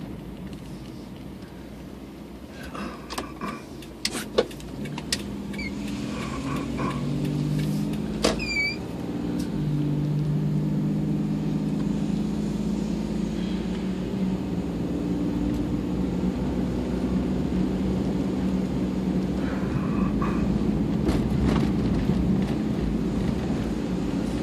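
Car engine and road noise heard from inside the cabin while driving, a steady low hum that grows louder over the first ten seconds or so as the car gathers speed. A few sharp clicks and knocks sound in the first nine seconds.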